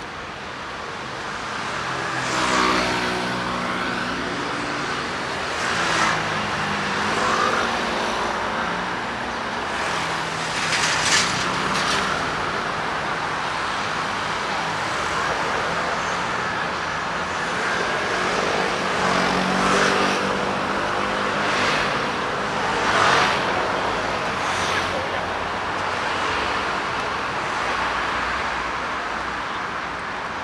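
Road traffic on a busy multi-lane city street: cars and motor scooters driving past close by, one after another, over a steady wash of road noise, with the hum of passing engines swelling and fading several times.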